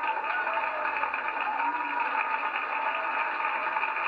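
Studio audience laughing and applauding together, a steady crowd noise.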